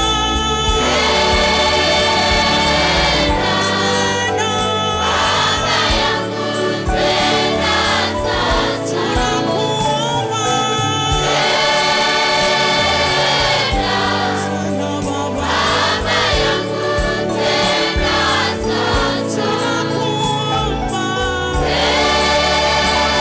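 Gospel choir music: many voices singing long held phrases of a few seconds each over a steady bass accompaniment.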